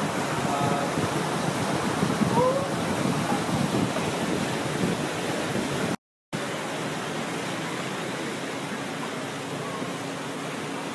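A steady rushing noise, broken by a brief dead-silent gap about six seconds in, with a few faint short tones in the first three seconds.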